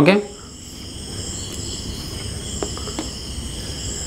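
Crickets chirring steadily, several high pitches held together, with a few faint clicks a little past the middle.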